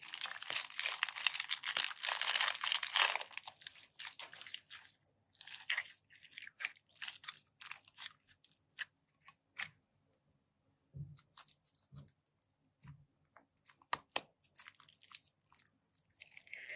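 Clear plastic piping bag crinkling and bead-filled slime crackling as hands squeeze and knead it, dense for about the first three seconds. After that come scattered clicks and crackles, a few soft low pops about two-thirds of the way in, and sharp clicks near the end.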